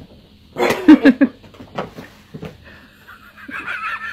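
A cat's brief calls: a loud one about half a second in, and a higher, wavering one near the end, with a few light knocks between.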